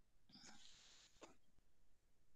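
Near silence in an online-class recording: room tone, with a faint brief indistinct sound about half a second in and a faint click just after a second.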